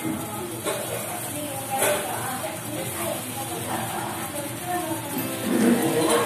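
Puris deep-frying in hot oil in a kadai, a steady sizzle, with background music over it.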